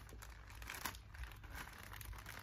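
Faint rustling and a few light clicks of plastic vertical-planter parts being handled as the top water tier is fitted, over a low wind rumble on the microphone.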